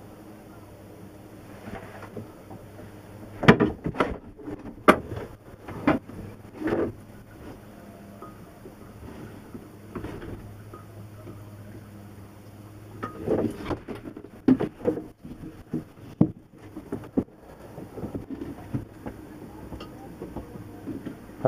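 Scattered knocks and bumps of things being handled in a small boat cabin, a few of them sharp, over a steady low hum.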